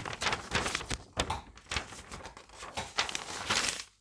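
Paper sewing-pattern instruction sheet rustling and crackling in irregular bursts as it is picked up and handled.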